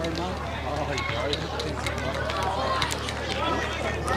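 Indistinct chatter of several spectators talking at once, over a steady low hum.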